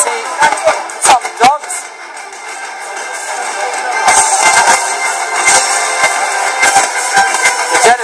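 Music and voices from a fight livestream, played through a computer's speaker and picked up by a phone. Short sharp shouts or knocks come in the first second and a half, then a dense wash of sound builds from about four seconds in.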